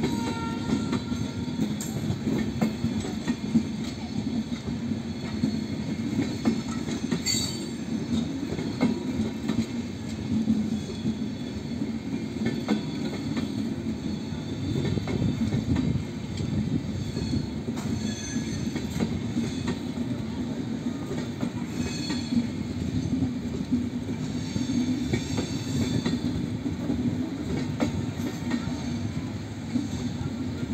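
LHB passenger coaches rolling past on their bogies: a steady wheel-on-rail rumble with scattered clicks over the rail joints. There are brief faint wheel squeals, one about a second in.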